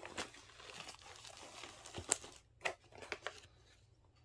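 Quiet rustling and crinkling of plastic packaging as a diamond painting kit's box is tipped out and its contents handled, with a few light clicks and taps.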